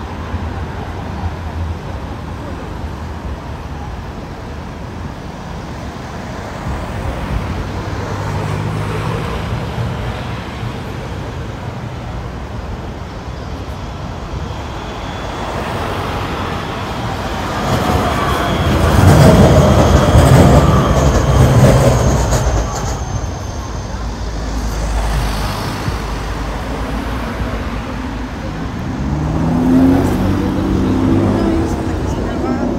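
Steady city road traffic, with cars passing one after another. A little past the middle a tram goes by, the loudest stretch, with a whining tone. Passersby's voices come in near the end.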